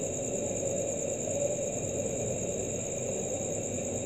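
Steady background noise with a constant high-pitched whine and no distinct events.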